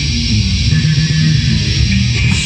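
Heavy metal band playing live: electric guitars and bass guitar carrying a steady, dense riff with no singing.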